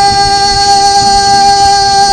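Male singer holding one long high note over strummed acoustic guitar.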